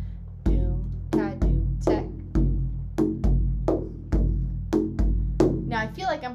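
Large hand-held frame drum played in the Egyptian Zaar rhythm, doom ka doom tek: deep, ringing bass dooms about once a second, with sharper ka and tek finger strokes between them. The rhythm is played a little fast for a starting tempo.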